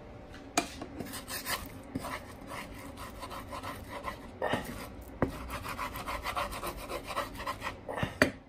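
Wooden spatula scraping and pushing egg around a frying pan in quick repeated strokes, with a couple of sharp knocks against the pan.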